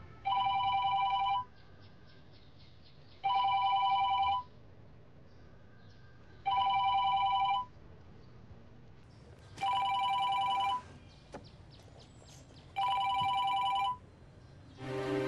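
An iPhone ringing with an incoming call: five rings about a second long each, roughly three seconds apart, each a steady two-tone electronic ring. A short click falls between the fourth and fifth rings.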